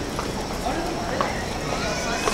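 Busy street at night: passersby talking indistinctly over a steady background hiss, with a few sharp footsteps clicking on the pavement.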